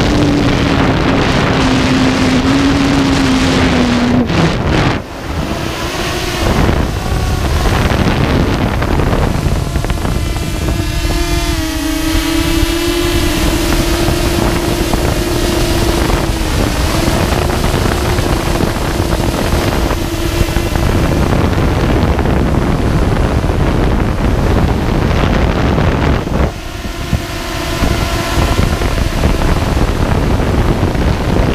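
Storm 8 multirotor drone's electric motors and propellers running in flight, heard from the camera mounted on it, with heavy wind and prop-wash noise on the microphone. A steady hum wavers and shifts in pitch as the throttle changes, and the sound drops briefly about five seconds in and again late on.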